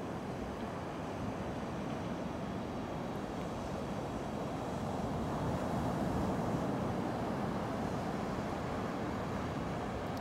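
Small ocean waves breaking and washing up a sandy beach: a steady rush of surf that swells a little in the middle.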